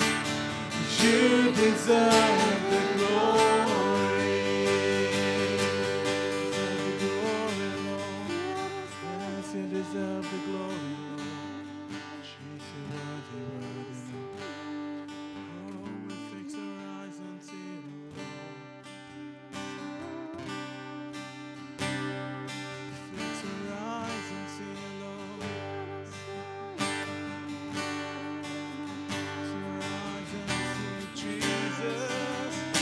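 Live worship band music: singing over strummed acoustic guitar and the band, dying down over the first ten seconds or so into a quieter, sustained passage of strummed acoustic guitar.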